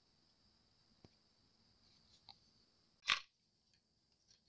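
Mostly quiet handling of a cast resin dish: two faint clicks, then one short tap just after three seconds in as the hard resin sakura dish is set down on the paper-covered work surface.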